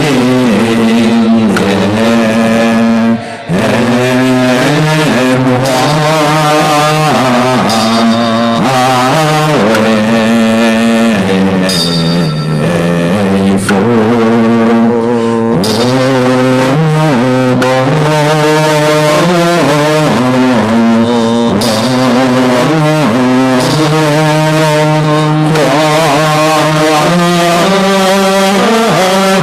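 Buddhist devotional chanting by a group of voices: a slow, melodic chant of held notes that changes pitch every second or two.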